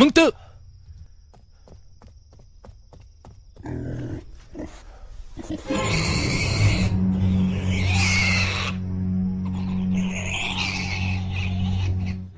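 A man's single shout at the start. Then, over a steady low music drone, a pig squeals loudly in three long bursts from about six seconds in.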